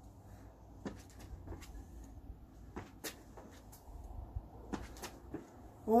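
Trainers tapping and scuffing on stone paving slabs during quick side-steps and knee raises: a handful of light, irregularly spaced taps over a low rumble.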